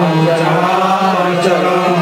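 Devotional chanting: a voice sings a chant in long, held notes that slowly bend in pitch, without a break.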